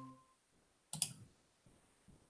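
A pitched ringing tone fading out at the very start, then a quick double click about a second in, as of a computer mouse clicked while a screen share starts.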